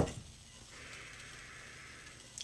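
A long, steady sniff through the nose, smelling a scented candle. It starts under a second in and is held to the end.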